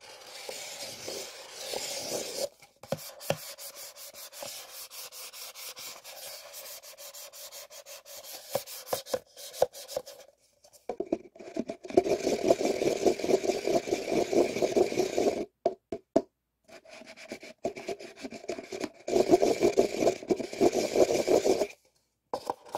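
Two paper cups joined rim to rim, rubbed and twisted against each other, paper grating on paper in a fast run of creaks. It comes in bouts with short pauses and is loudest from about eleven seconds in.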